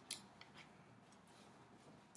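Near silence with a few faint clicks and light rustles, the clearest just after the start: book pages being handled and turned to find a page.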